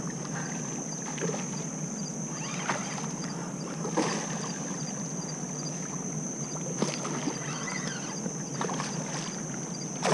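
Water splashing and sloshing as a hooked red drum thrashes at the surface close to the bank, with a few sharp clicks along the way.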